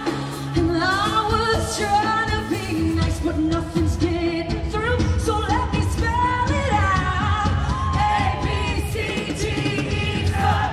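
Live concert performance: a woman singing a pop-rock song with a full band behind her, her voice holding and bending long notes over bass and drums.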